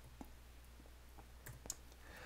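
Near silence over a low steady hum, broken by a few faint short clicks, two near the start and two about one and a half seconds in.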